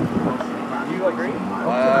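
Men's voices with a drawn-out "uhh" near the end, over a steady low hum from the boat's motor running.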